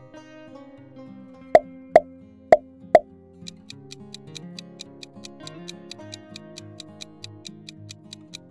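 Light plucked-guitar background music with four quick pop sound effects about half a second apart, followed by a quiz countdown timer ticking about four times a second.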